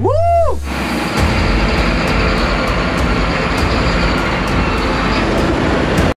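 A man's short whooping shout, then from just under a second in a loud, steady rush of engine and tyre noise from a Massey Ferguson 8S tractor pulling away, which stops abruptly near the end.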